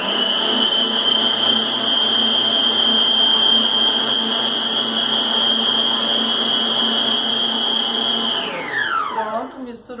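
Electric stand mixer with a wire whisk running at a steady high whine as it briefly blends flour and milk into a whipped egg-and-sugar cake batter. About eight and a half seconds in it is switched off, and the whine falls in pitch as the motor spins down.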